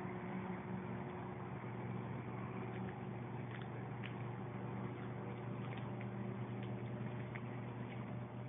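A steady low mechanical hum with an even drone, running without change.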